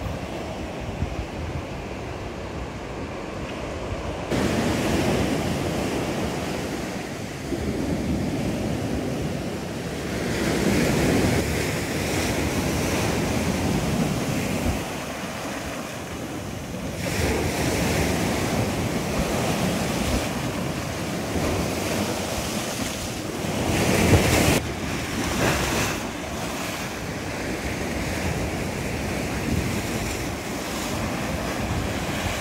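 Sea waves surging in and washing over the stone apron at the foot of a seawall, swelling and falling away every few seconds, with one loudest surge about three quarters of the way through. Wind buffets the microphone.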